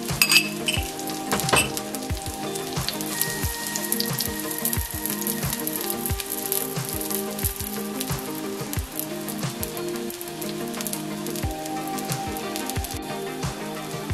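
Foxtail-millet and lentil adai batter frying on a hot tawa, with a steady sizzle and crackle all through. Background music plays along, and there are a couple of sharper clicks in the first two seconds.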